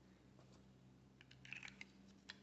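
Near silence with a faint steady hum, broken by a few small, faint plastic clicks and rubs in the second half as a small plastic glue bottle is handled and its cap pushed back on.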